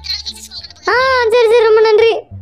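A high-pitched voice sings one long held note, starting about a second in after a few short vocal sounds, over a low steady hum.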